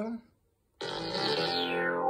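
A monophonic synth bass note (GarageBand's Classic Funk Synth Bass patch) sounds once, starting a little before the middle and held for about a second and a half. Its brightness fades steadily over the note.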